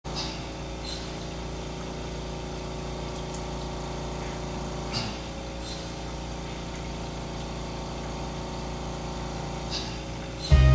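A steady low hum of room and equipment noise, with several steady tones in it, and a few faint clicks about a second in, midway and near the end.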